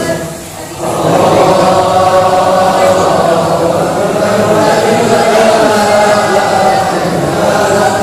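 A large group of men's voices chanting together in unison, a devotional chant in a reverberant mosque hall. There is a brief breath pause just under a second in before the chant carries on.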